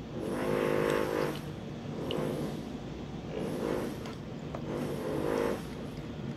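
A power tool from renovation work on the floor above, running in four short bursts of up to about a second each.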